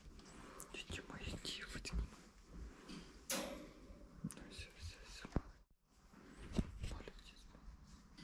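Faint, low whispering with soft handling noises and scattered small clicks, and a brief silent gap a little past the middle.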